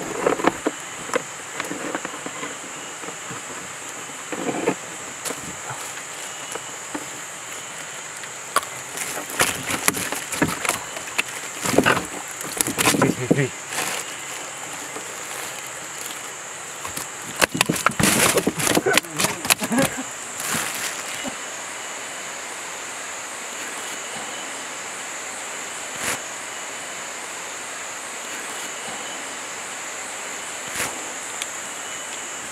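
A steady, high-pitched insect drone runs throughout. Over it come irregular knocks, scrapes and clatter from a caught fish being handled against the bottom of a wooden dugout boat, loudest and busiest from about nine to twenty seconds in.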